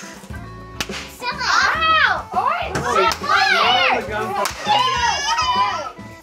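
Party poppers going off one after another with several sharp pops over the first few seconds, among children's high squeals and shrieks.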